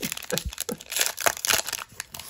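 Foil booster-pack wrapper being torn open and crinkled by hand, a dense run of irregular crackles.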